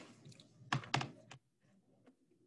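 Computer keyboard keys clicking about four times in quick succession, starting about three quarters of a second in, after a brief soft rustle.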